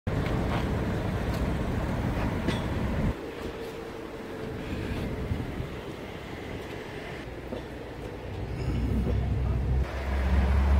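Low, steady rumble of a running vehicle engine that cuts off suddenly about three seconds in, leaving a quieter background, then builds again near the end.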